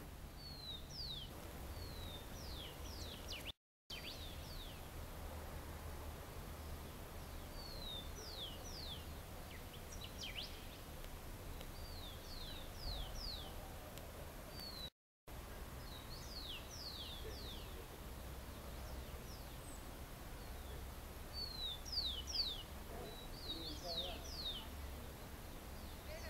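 Small birds calling: repeated clusters of short, high chirps that slide steeply downward in pitch, over a low steady rumble. The sound cuts out completely twice, briefly.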